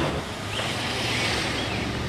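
Steady outdoor background noise, a soft rush with some wind on the microphone, and a few faint short high chirps in the first second.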